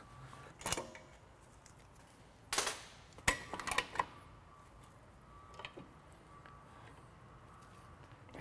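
A few sharp metallic clicks and clinks of drum-brake springs and hardware being worked off the backing plate with a brake spring tool, with a short scrape about two and a half seconds in.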